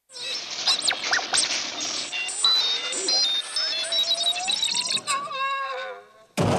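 R2-D2's electronic beeps and whistles: a rapid string of high chirps, a slow rising whistle through the middle and a warbling trill near the end. The droid's voice is synthesizer tones blended with a human voice.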